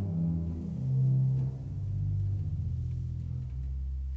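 Pedal 16-foot Principal of a 1954 Aeolian-Skinner pipe organ playing a downward series of low notes, ending on a held very low note; the pipes speak promptly.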